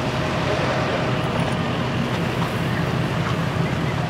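A boat's engine runs steadily underway with a low rumble, along with water rushing past the hull and wind buffeting the microphone.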